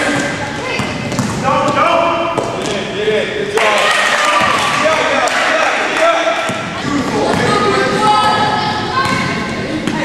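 Live gym audio of a youth basketball game: a basketball bouncing on the hardwood floor amid the indistinct calls and chatter of players and spectators, echoing in a large hall.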